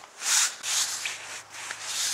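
A stiff push broom scraping snow off pavement in repeated strokes, the loudest about a third of a second in.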